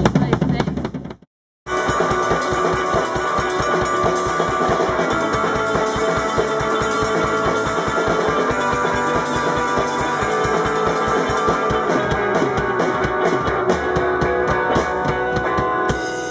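Rock music with a drum kit and guitar, starting after a short dropout to silence just over a second in; regular drum strokes run under the guitar.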